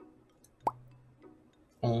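A short edited-in pop sound effect: a sharp click with a quick upward sweep in pitch, heard once about two-thirds of a second in.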